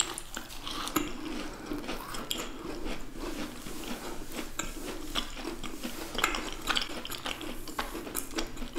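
Close-miked chewing of freshly bitten macarons: a steady run of small crunches and crackles as the crisp shells break down, mixed with soft wet mouth sounds.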